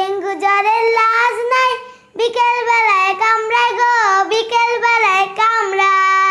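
A young girl singing solo and unaccompanied, in two phrases with a short breath about two seconds in, ending on a long held note near the end.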